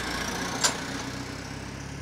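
Van engine idling with a steady low hum, and one short click about two-thirds of a second in.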